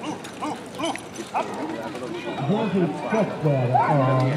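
People's voices calling out, with a man's voice coming in louder a little over halfway through and running on to the end.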